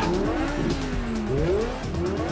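Several car engines revving at a standstill, their pitches rising and falling over one another, with tyres spinning in burnouts, under film-score music.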